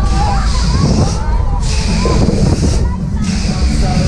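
A Höpler Schunkler fairground ride (Kessel-Tanz) in full swing, heard from a seat on board: a heavy rumble with air rushing over the microphone in surges about every second and a half, and riders' voices and shouts over it.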